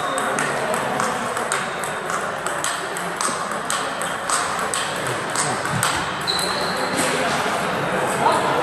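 Table tennis balls ticking irregularly off bats and tables in a large hall, over a murmur of voices. There is one brief high squeak about three-quarters of the way through.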